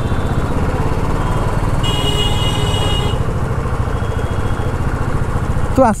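Royal Enfield Classic 350's single-cylinder engine running steadily at low riding speed, its firing pulses even and unbroken. About two seconds in, a high-pitched horn sounds for about a second.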